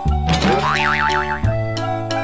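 Background music with held keyboard notes and a steady bass, with a cartoon 'boing' sound effect laid over it about half a second in, its pitch wobbling up and down several times.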